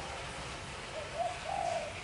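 Spotted dove cooing: a short phrase of three notes about a second in, the last note the longest and loudest.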